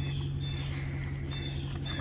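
An engine running steadily, a low even hum that holds without change, with a faint higher buzz above it.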